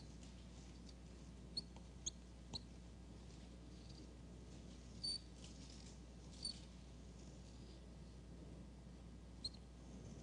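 Marker squeaking faintly on a whiteboard as circles and lines are drawn: about six short, high squeaks spread through, over a steady low hum.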